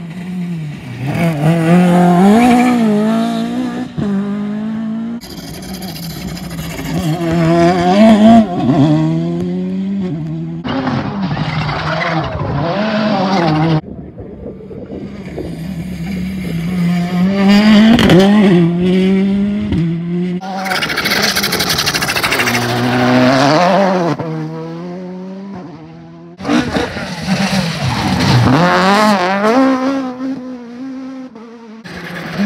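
Rally cars driven hard on a tarmac stage, one after another: engines revving up and dropping as they brake and change gear, with tyre squeal. The sound jumps abruptly from car to car several times.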